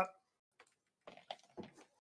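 A few faint, short clicks and taps, scattered through the second half.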